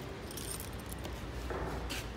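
Faint rustle and handling noise of a hand-held camera being carried while walking, with a light metallic jingle near the start and a low rumble of handling in the second half.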